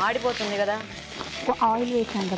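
Tomato-onion paste sizzling in hot oil in a frying pan on a gas hob while a spatula stirs it; the paste is being cooked briefly as the base of a gravy. A steady hiss runs throughout, with a woman's voice over it.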